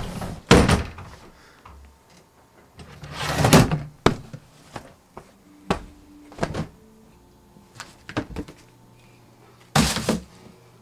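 A door slams shut about half a second in. Rustling and a scatter of light knocks and clicks from handling things follow, and another sharp thump comes just before the end.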